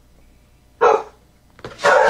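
A pit bull–type dog gives a single short bark about a second in, barking out of fear of a balloon.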